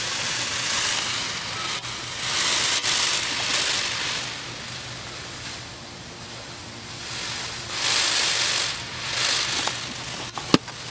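Peacock shaking its fanned train in courtship display, the quills rattling in a hissing rustle that swells and fades in bursts of a second or so, about four times.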